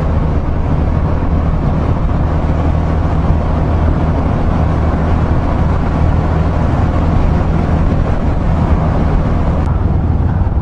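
Yamaha MT-03's 660 cc single-cylinder engine running steadily at cruising speed, with a constant rush of wind over the microphone.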